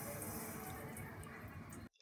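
Faint steady rush of water running from a kitchen sink tap, cutting off just before the end.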